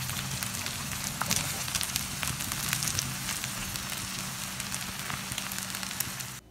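Stir-fried rice vermicelli with chicken and vegetables sizzling in a frying pan, with scattered small crackles and pops over a steady low hum; the dish is fully cooked.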